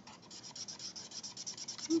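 Felt-tip skin-tone marker rubbing on sketch paper in quick back-and-forth strokes, filling in colour.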